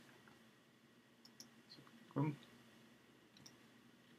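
A few faint, separate clicks of a computer mouse as the terminal output is scrolled and pointed at. A brief hum-like voice sound about two seconds in is louder than the clicks.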